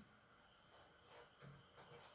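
Near silence: faint room tone with a steady high-pitched background tone.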